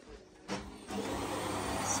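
A French door is opened about half a second in, and steady rain becomes audible as an even hiss that carries on.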